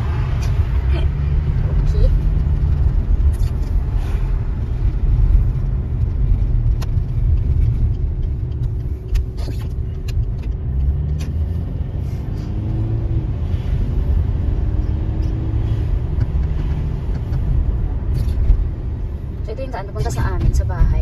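Steady low rumble of a car's engine and tyres heard from inside the cabin while driving, with a few faint clicks.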